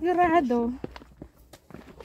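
A brief spoken sound in the first moment, then quieter footsteps with a few light steps on the path.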